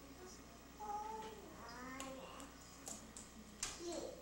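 A toddler's high-pitched vocal sounds: a drawn-out cry about a second in and a short rising one just before the two-second mark. A few light taps follow, the sharpest one near the end.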